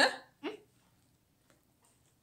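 A boy's voice: a short "yeah" followed about half a second later by a brief "mm" of enjoyment while eating.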